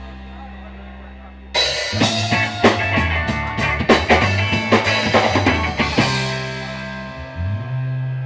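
A live rock band on electric guitar, bass and drum kit. A held chord fades out, then about a second and a half in the drums come in loud with a run of fast hits over the guitar and bass for about four and a half seconds. After that the chord rings out and fades again.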